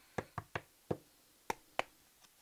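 Tarot cards being shuffled and handled: six short, sharp taps of the deck at uneven intervals.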